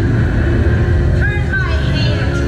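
Amplified show soundtrack over loudspeakers: a loud, deep rumble with a voice heard briefly over it about a second and a half in.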